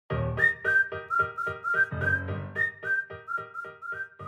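Short upbeat intro jingle: a whistled melody over a bouncy accompaniment, an even beat of about four notes a second.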